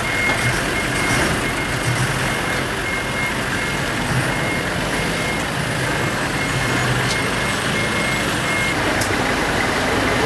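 A vehicle's reversing alarm sounding a repeating high beep over steady vehicle and outdoor noise; the beeping stops near the end.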